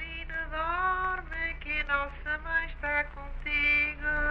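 A woman singing a Portuguese lullaby in a high voice, gliding between notes and holding a long note near the end, over the steady low hum of an old 1939 field recording.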